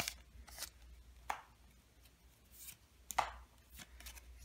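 A foil Pokémon card booster pack being handled and its trading cards slid out: several short, crisp crinkles and card clicks with quiet gaps between them.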